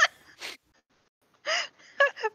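A man laughing in breathy gasps: a sharp gasp at the start, a fainter breath half a second later, and a louder, partly voiced gasp about one and a half seconds in.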